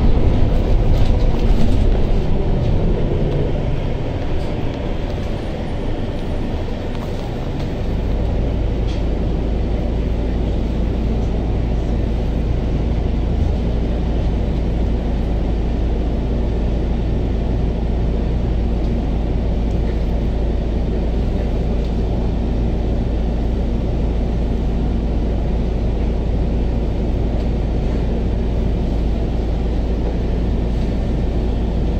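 Interior of a city bus, probably a double-decker: running noise eases as the bus slows, and from about eight seconds in it stands with a steady low engine hum.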